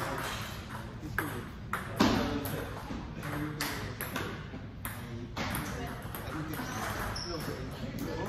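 Table tennis ball clicking off rubber paddles and the table top in play: about a dozen sharp, separate clicks, the loudest about two seconds in.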